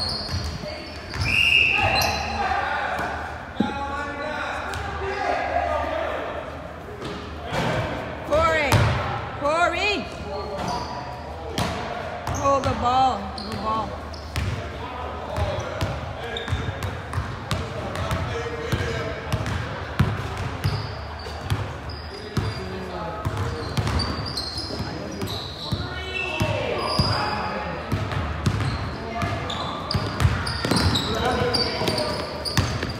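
Basketball game on a hardwood gym floor: a ball being dribbled and bouncing in repeated short knocks, sneakers squeaking now and then, and players' voices calling out, all echoing in a large gym.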